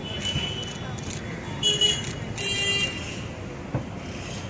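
Street traffic noise with short, high-pitched horn toots, three in all: a faint one at the start, then two louder ones about a second apart in the middle.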